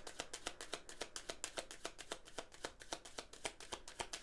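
A deck of tarot cards being shuffled by hand: a quick, even run of light card-on-card flicks, about eight a second.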